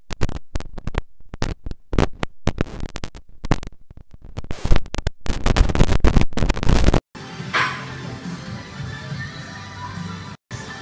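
Music in choppy fragments broken by brief silences for about seven seconds, then cutting to steadier, quieter music.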